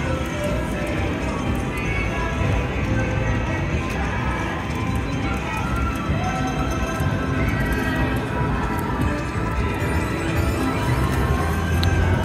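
Aristocrat Buffalo slot machine's game music and sound effects playing steadily as its reels spin during the free-games bonus.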